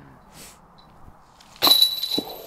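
A disc golf putt striking the metal chain basket about one and a half seconds in: a sudden loud clang that rings on as a high metallic tone. The disc does not stay in and bounces out of the basket.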